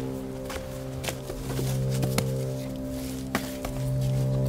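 Music: a steady low drone that swells louder twice. A few sharp, irregular cracks sound over it, like footsteps on dry forest ground and twigs.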